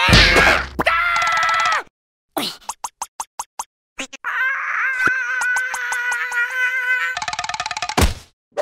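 Cartoon music and sound effects: a wavering pitched sound, then a quick run of short taps, then a long held wavering note that turns buzzy near the end.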